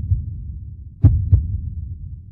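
Outro soundtrack down to a low bass hum with a deep double thump, like a heartbeat, repeating about every 1.2 seconds.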